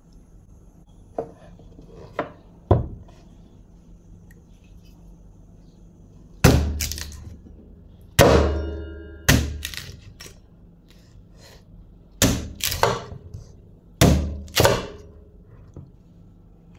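Large kitchen knife chopping a cassava root into thick pieces on a wooden cutting board: a few light taps, then from about six seconds in roughly ten heavy chops, each a sharp crack with a thud on the board, coming in pairs and threes.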